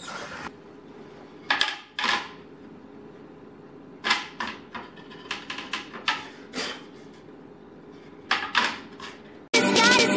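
Wooden cutting board and other items handled and set down on a granite countertop: a scattering of short knocks and clatters. Electronic music cuts in suddenly near the end.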